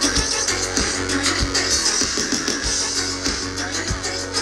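Live electronic dance band playing over a PA: drum kit with a steady beat of kick-drum hits about three every two seconds, under a synth bass line and keyboards.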